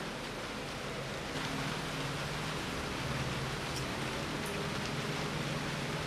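Steady background hiss with a faint low hum joining about a second in: room noise.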